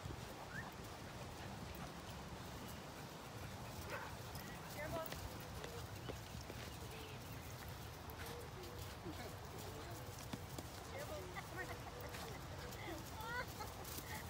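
Two puppies play-wrestling on grass, with faint scuffling and small clicks, and many short high chirps and distant voices, more of them near the end.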